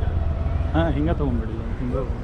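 A low, steady rumble of street traffic, with a person's voice speaking briefly about a second in.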